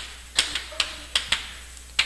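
Chalk tapping on a blackboard while writing: a string of about six sharp, irregular clicks.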